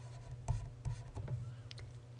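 Faint scratching and a few light taps of a pen writing, over a low steady hum.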